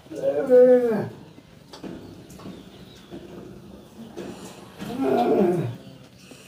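Two drawn-out vocal calls, each about a second long and falling in pitch at the end: one just after the start, the other about five seconds in.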